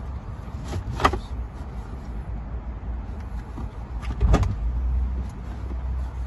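Two sharp knocks, one about a second in and a louder one a little after four seconds, over a steady low rumble. They are the seat's metal frame knocking against the van floor and body as it is tilted and lifted out.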